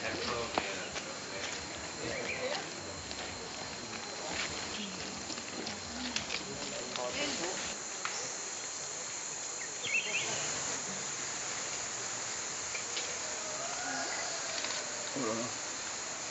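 Steady high-pitched drone of forest insects, growing stronger about halfway through, with faint voices of people nearby.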